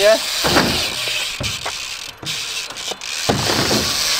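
BMX tyres rolling over a concrete skatepark surface as a noisy rush, with a short burst of a voice at the start and again near the end.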